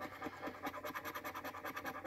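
A coin scratching the coating off a lottery scratch-off ticket in quick, even, repeated strokes.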